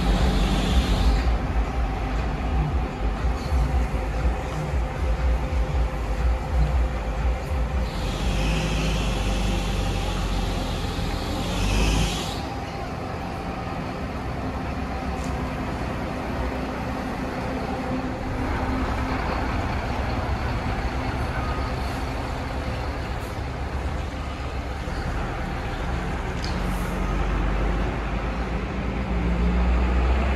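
Diesel engine of a Marcopolo Viaggio 1050 intercity coach running as the coach pulls away, with a long hiss of released air about eight seconds in that lasts some four seconds. After that the engine sound is quieter and steady, with a swell near the end.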